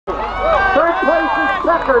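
A race announcer's voice calling the finish of a cross-country race, cutting in suddenly after silence.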